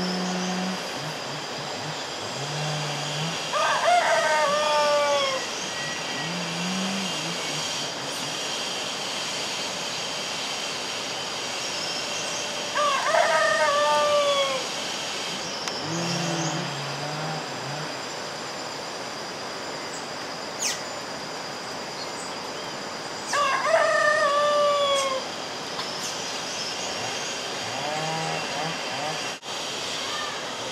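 A rooster crowing three times, about ten seconds apart, each crow about two seconds long and falling in pitch at the end. Under it runs a steady high-pitched insect drone.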